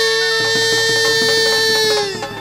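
Live devotional bhajan music: a male singer holds one long high note over the accompaniment, the note sagging slightly as it ends. Drums come in about half a second in.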